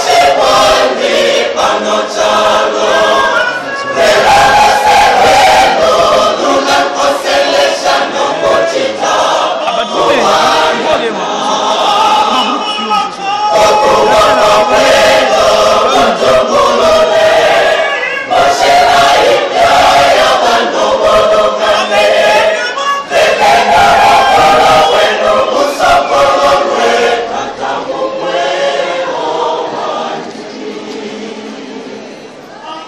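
A large church choir singing together in phrases, loud and close, with the singing tailing off near the end.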